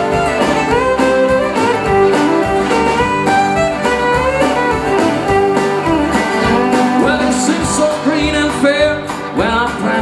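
Live acoustic country band playing an instrumental break between verses: a fiddle carries the melody over strummed acoustic guitars, accordion and upright bass.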